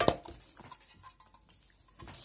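Tarot cards being handled: one sharp tap of the deck right at the start, then faint rustling of the cards that dies away.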